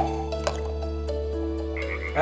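Frog croaking sound effect over a steady sustained background tone, opening with a sharp click.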